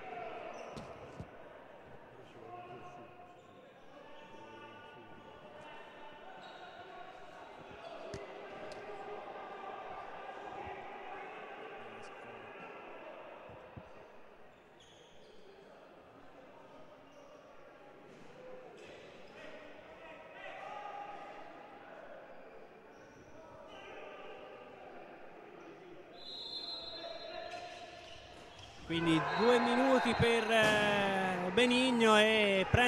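Indoor handball-hall background: several voices talking at once in a large hall, with a handball bouncing on the court floor now and then.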